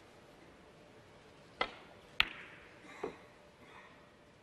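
Snooker shot: the cue tip strikes the cue ball, and just over half a second later the cue ball hits an object ball with a sharp, ringing click, the loudest sound. A softer knock of a ball follows about a second after that.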